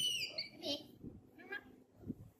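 Baby monkey's high-pitched calls: the tail of a long arching squeal at the start, then two short high chirps, about half a second and a second and a half in.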